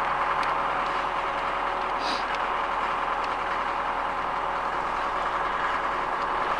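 A steady, even mechanical drone with a faint hum running through it, and one brief sharp click about two seconds in.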